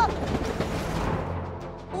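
Cartoon soundtrack: background music with a noisy hiss that swells and fades out by about a second and a half in.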